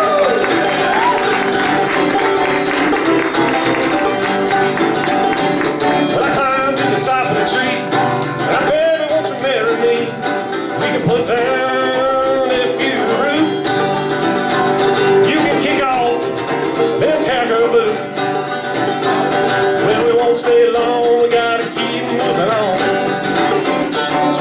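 Live acoustic string-band music: banjo and guitar playing together through a stretch of the song with no words sung, under a wavering melody line that comes back every few seconds.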